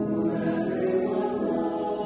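Mixed choir of men's and women's voices singing a hymn in parts, holding sustained chords.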